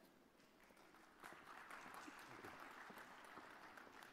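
Faint audience applause, a steady patter of many hands clapping that starts about a second in.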